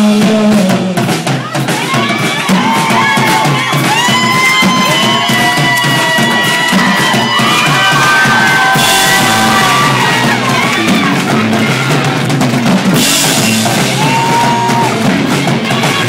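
Live rock band playing an instrumental passage with no vocals: a drum kit with bass drum and bass guitar under sustained lead notes that bend and slide in pitch. Cymbals ring out loudly from about nine to thirteen seconds in.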